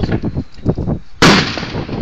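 A single loud explosion about a second in, going off all at once and then trailing away.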